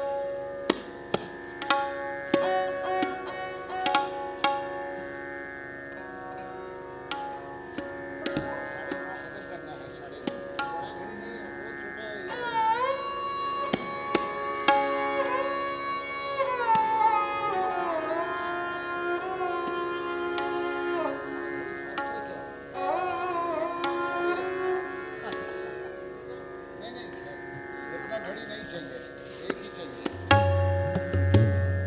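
A bowed string instrument plays a melody with slides and bends between notes over a steady drone, beginning about twelve seconds in. Scattered tabla strokes ring out in the first ten seconds.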